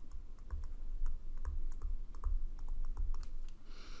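Stylus tapping and scraping on a tablet screen while a word is handwritten: a string of light, irregular taps with faint low thumps.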